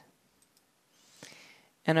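Two faint clicks of a computer mouse, close together, then a brief soft hiss before the voice returns.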